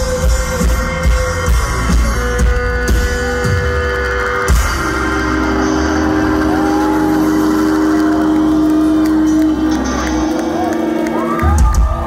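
Rock band playing live, heard from within the crowd: drums and bass pound a steady beat, then about four and a half seconds in a final hit gives way to a chord held and ringing out with no drums. Near the end the crowd starts whooping and cheering.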